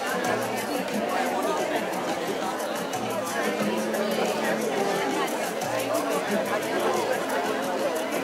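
Many people chatting and laughing at once over background music from loudspeakers, whose low bass note returns every few seconds under a steady beat.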